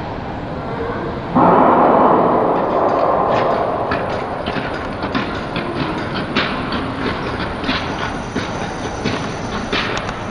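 A sudden loud burst about a second and a half in, most likely the race's start signal, dying away in the ice hall over a few seconds. Then long-track speed skates strike and scrape the ice in a run of short, sharp strokes as the skaters accelerate away from the start.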